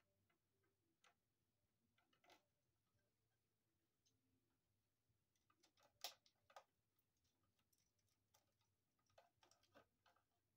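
Near silence broken by faint, scattered clicks of a small screwdriver working the screw terminals of a GFCI receptacle. The clicks come thickest about six seconds in and again near the end.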